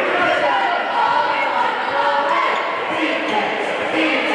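Basketball being dribbled on a hardwood gym floor, under a steady hubbub of spectators' voices and shouts.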